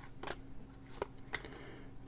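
Glossy trading cards flipped through one at a time by hand: four light snaps of card stock against card stock, with faint sliding between them.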